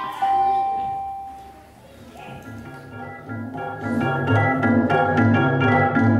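Live electronic organ-like keyboard music. A held chord fades away over the first two seconds. After a short lull a new passage starts, with a quick, even pulse, and grows louder.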